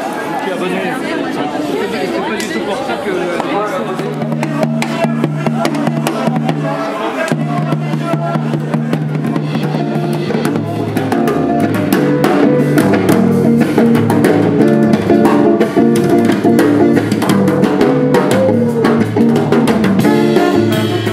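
Voices at first, then a live jazz band: drum kit and electric bass come in about four seconds in. The band fills out with saxophones and grows louder about halfway through.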